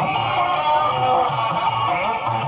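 Music with a steady beat.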